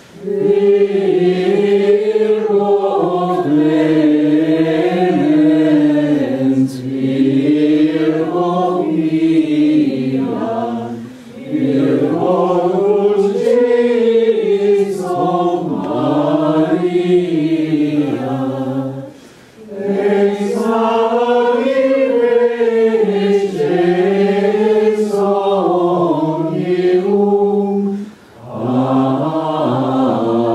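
Men's voices singing Latin plainchant in unison, the Sarum chant shown on the screen. Long flowing phrases, with three short breath pauses between them.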